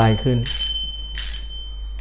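Pioneer Cyclone 6000 spinning reel being cranked, running with a quiet whir under a faint steady high ring. Its running noise is a little quieter than the Scorpion reel it is set against, and judged acceptable.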